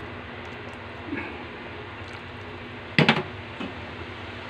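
Chopsticks stirring soup in an aluminium pot over a steady hiss, with a short clatter of sharp clicks about three seconds in as they knock against the pot.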